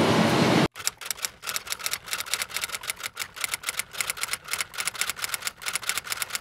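Rapid, uneven clicking like typewriter keys, several clicks a second, starting under a second in and stopping abruptly near the end. Before the clicking there is a brief stretch of noisy outdoor interview sound.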